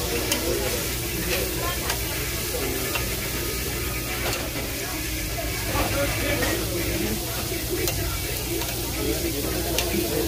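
Thin-sliced meat sizzling steadily on a tabletop Korean barbecue gas grill, with a few light clicks of metal tongs as it is spread and turned. Murmured voices sit underneath.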